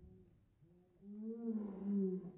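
A woman's long, wavering wordless cry at the shock of ice-cold water, starting about a second in and getting louder toward the end.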